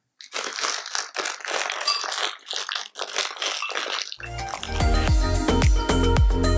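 Crinkling and crackling of a small plastic packet being cut and torn open by hand, in quick irregular bursts. From about four seconds in, background music with a steady beat and heavy bass takes over.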